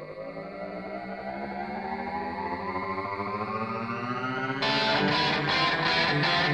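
Outro music: a held chord that slowly rises in pitch and swells in volume, then about four and a half seconds in a louder guitar-led section comes in with a regular beat.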